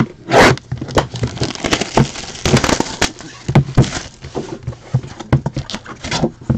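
Plastic shrink wrap crinkling and scraping as a sealed trading-card box is handled and unwrapped, in irregular crackles and scrapes with a few sharp knocks of the cardboard box.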